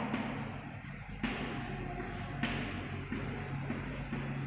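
Chalk writing on a blackboard: a soft, scratchy sound in a few stretches, over a low steady hum.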